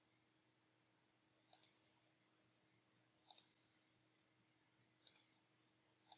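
Faint computer mouse clicks: three paired clicks about two seconds apart, over near-silent room tone.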